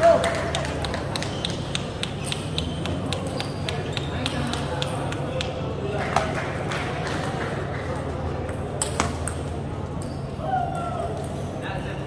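Table tennis balls clicking off paddles and table tops in a busy hall: a quick run of sharp ticks over the first few seconds, then scattered ones, with voices in the background.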